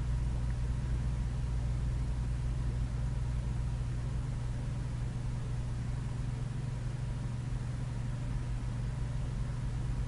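Steady low hum with a faint hiss underneath, unchanging throughout: the background noise of the recording, with no speech.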